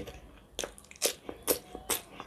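A person chewing crunchy food with the mouth closed: a few separate crisp crunches, about one every half second.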